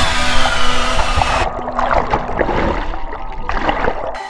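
Splash of a jump into a lake, recorded by a GoPro in its waterproof housing. A rush of noise gives way, about one and a half seconds in, to a muffled underwater sound of bubbling and churning water, which opens out briefly near the end.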